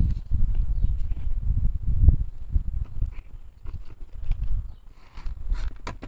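Low, uneven rumble on the camera microphone, louder in the first half and fading after about three seconds, with a few faint knocks and clicks.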